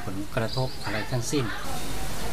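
A man talking in short phrases, with a thin, steady high-pitched whine in the background that cuts off about a second and a half in.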